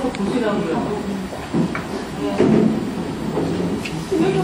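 People talking in a room, several voices overlapping in background chatter.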